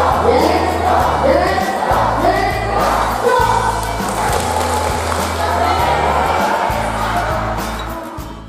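Music with a steady bass line, with a group of voices singing along over it.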